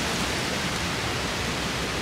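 Steady, even outdoor background noise with no distinct sounds in it.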